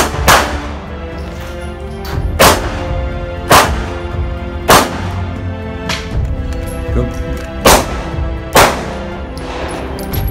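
Shots from a small pocket pistol: a quick pair at the start, then single shots every second or so, seven in all. Background music plays under them.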